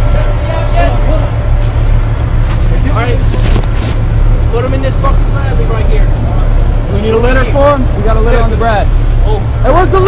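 A steady low engine rumble runs throughout. Men's raised voices call out over it, indistinctly, several times.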